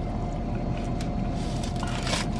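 Steady low rumble with a constant hum inside a car's cabin, the sound of the car running while parked, with a few faint clicks of chewing.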